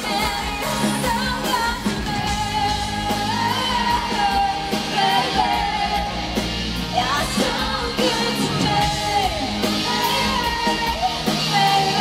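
Live pop-rock band performance: a female lead vocal sings a wavering melody over electric guitars, bass and a drum kit, heard from the crowd in a large concert hall.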